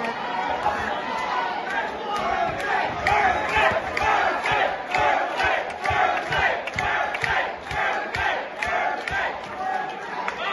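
Boxing crowd at ringside yelling and shouting encouragement, many voices overlapping, growing louder through the middle, with occasional sharp knocks among them.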